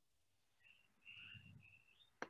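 Near silence, with a few faint, short, high-pitched tones in the middle.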